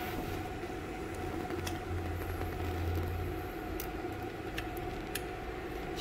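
Steady low hum of running equipment with a faint steady tone, and a few faint clicks of a tool on the screws holding the fiber laser's isolator as they are tightened.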